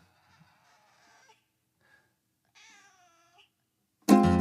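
Domestic cat meowing faintly twice, the second meow clearer and dipping then rising in pitch.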